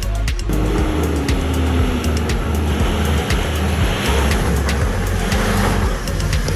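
Background music with a steady beat, mixed over a four-wheel drive's engine running under load as it climbs over rough off-road ground.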